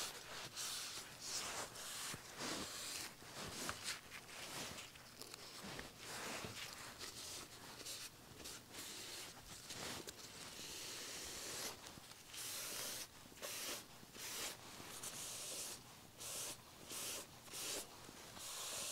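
Faint rubbing of a paper towel wiped and dabbed over a wet water-slide decal on a gessoed wooden panel, smoothing the decal down: a run of soft, irregular swishes.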